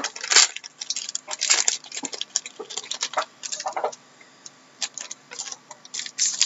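Hockey trading cards and their pack wrappers being handled: irregular rustling and light clicks of card stock, dense at first and sparser after about two seconds.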